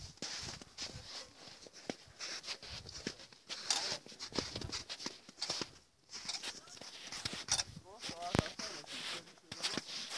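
Hikers' footsteps on snow and loose scree: irregular short steps and knocks of boots on stone, over a hissy, scuffing background.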